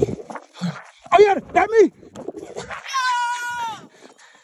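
A person's voice without words: two short shouts, then a long high-pitched squeal held for about a second near the end, dropping in pitch as it stops.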